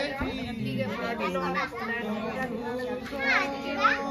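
Several people and children talking and calling out at once, their voices overlapping, with two quick high rising calls in the second half.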